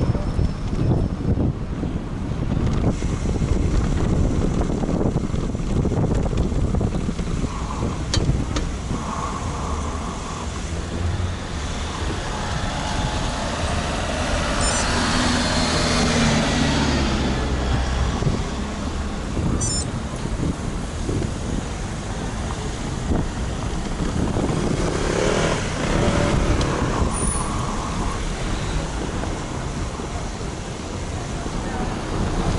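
A bicycle riding through town traffic: wind buffeting the microphone and tyres rumbling and rattling over cobbles and tarmac. A motor vehicle's engine hums close by around the middle, and another vehicle passes near the end.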